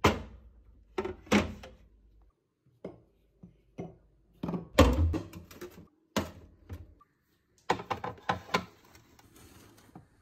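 Glass jars and glass bottles being set down on refrigerator shelves and knocking against each other: a string of sharp knocks and clinks, loudest about five seconds in.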